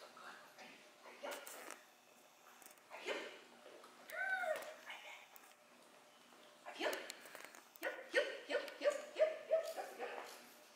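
A dog whining and yipping: one rising-and-falling whine about four seconds in, then a quick run of short high yips near the end.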